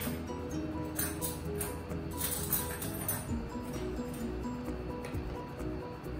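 Background music with a steady melody, and a few short light clicks over it in the second to fourth seconds.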